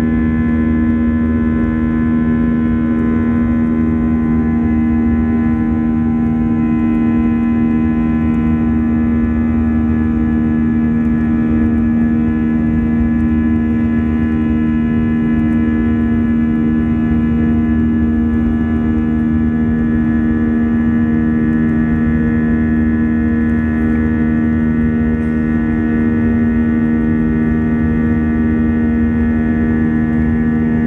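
Cabin noise inside an Airbus A321-232 climbing after takeoff: its IAE V2500 turbofans give a loud, steady drone with a strong low hum. The lower drone swells and fades slowly every few seconds.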